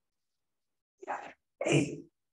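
Two short, breathy vocal bursts from a man, about a second in and a quarter second apart.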